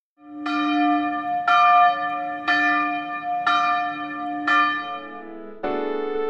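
A church bell struck five times, about one stroke a second, each stroke ringing on and fading. Piano music comes in near the end.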